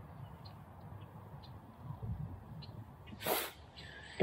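Wind buffeting the microphone by a flowing river, a low uneven rumble with a few faint ticks, and one short sharp hiss about three seconds in.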